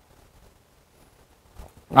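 Near silence: quiet room tone, until a man's voice starts speaking right at the end.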